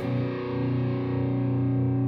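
Distorted electric guitar letting a single chord ring out, held steady after a run of strummed chords ends just at the start.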